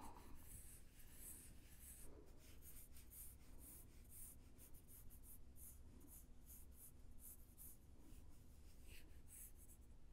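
Pencil lightly sketching on paper: faint, quick, repeated scratchy strokes.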